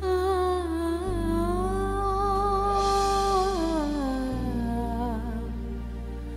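A woman's voice vocalising a slow, wordless melody in long held notes with vibrato, stepping down in pitch a little after three seconds. Underneath are sustained low accompaniment chords that change about a second in and again after about four seconds.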